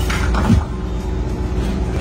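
Steady low mechanical rumble with a constant hum, and a brief voice sound about half a second in.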